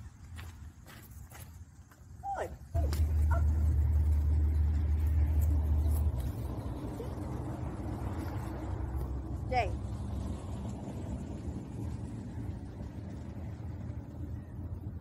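A low, steady rumble that starts suddenly a few seconds in, stays loud for about three seconds, then carries on more quietly to the end.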